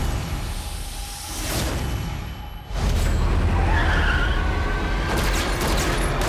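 Action-trailer music and sound effects: a heavy low rumble that thins out and drops away briefly, then slams back in with a sudden hit just under three seconds in. About four seconds in comes a high screech that fades out slowly.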